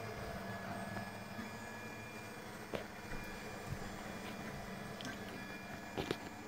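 Desktop 3D printer running a print: a faint, steady hum of its fans and motors, with one small click about three seconds in.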